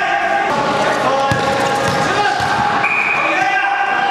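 A ball thudding on a hard indoor court floor, with voices and steady held tones over it; one higher held tone sounds briefly about three seconds in.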